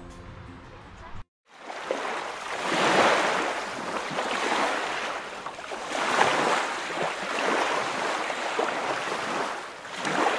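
River water rushing and rippling around an inflatable tube drifting down a shallow rocky river, mixed with wind on the microphone close to the water. It is a steady rush that swells and eases. It begins after a brief dropout about a second in.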